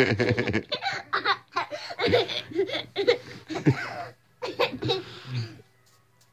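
Young girl laughing in a string of short bursts, dying away about five and a half seconds in.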